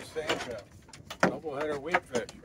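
Voices talking, with a few short knocks in between.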